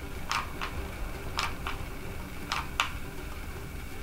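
Plastic trigger of a hot glue gun clicking as it is squeezed and released, three pairs of short clicks about a second apart, while the glue is slow to come out.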